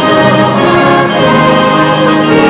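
Brass band playing a hymn tune in full, sustained chords.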